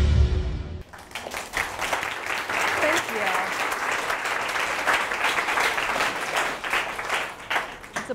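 Intro music cuts off less than a second in. An audience then applauds, with dense, steady clapping that thins out near the end.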